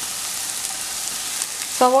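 Hot oil sizzling in a frying pan with a steady hiss as chopped onions are tipped in on top of frying green chillies.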